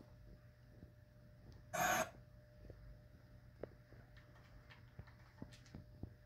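Quiet room with a steady low hum, a short breath-like rush of noise about two seconds in, and a few faint clicks.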